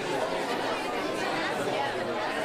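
A crowd of people chattering, many voices talking over one another at a steady level.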